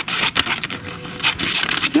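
Small pen-shaped scissors with stainless-steel blades cutting into a sheet of paper in a quick series of short snips.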